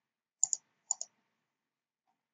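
Two computer mouse clicks about half a second apart, each a quick press-and-release double tick.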